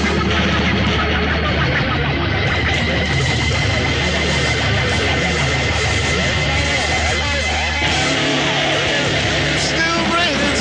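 Loud rock music led by electric guitar, with a high note held through the middle of the passage.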